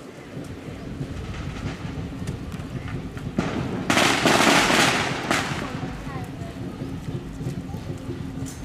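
Firecrackers popping: scattered single pops, then a dense crackling burst about three and a half seconds in that lasts roughly two seconds, with voices of the procession underneath.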